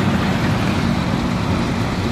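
Heavy machinery in a stone quarry running steadily: an even, low engine-like rumble with a broad noisy hiss over it.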